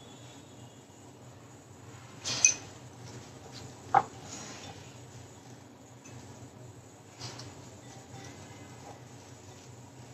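Hand-mixing a salad of shredded vegetables in a glass bowl against a quiet room hum, with a short rustle about two seconds in and a single light clink about four seconds in.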